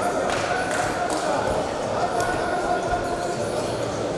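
Spectators and cornermen shouting over one another, with several sharp thuds of punches landing during ground-and-pound on the cage mat.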